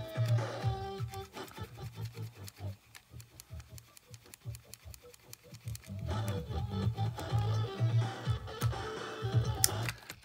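Music playing back from a cassette on a Sony Walkman WM-EX610, at a modest level that dips lower for a few seconds in the middle, with small handling clicks. The output is still not very loud even after the volume potentiometer was cleaned with anhydrous alcohol.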